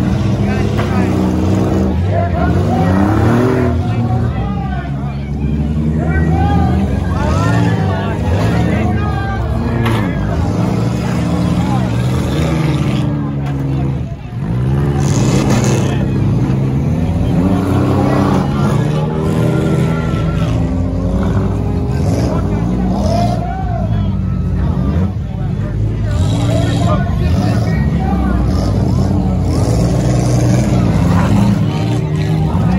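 Several small demolition-derby cars revving their engines hard, the pitch climbing and dropping again and again, with repeated crashes of metal bodies hitting each other. Crowd voices run underneath.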